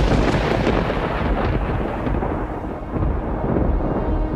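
A long rumble of thunder over rain noise, deep and dense, slowly easing off.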